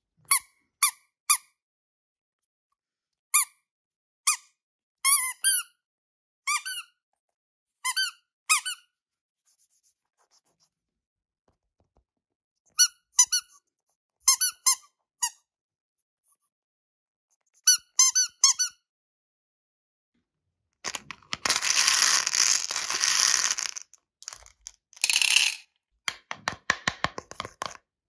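Soft vinyl squeeze toy squeaking as fingers squeeze it, about fifteen short bending squeaks, some in quick pairs and triples, with gaps of a few seconds between. Later comes a few seconds of loud hiss-like rustling, a shorter burst of the same, and then a run of quick clicks.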